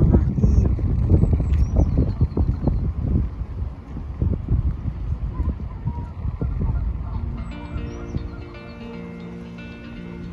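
Wind buffeting the microphone in gusts, loudest in the first few seconds. Background music with held notes comes in about seven seconds in.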